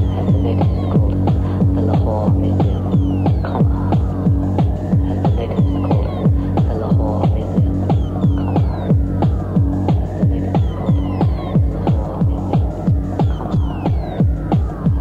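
Hardtek (free-party tekno) track: a fast, relentless kick drum at about three beats a second over a sustained low droning bass, with short falling synth sweeps repeating high above.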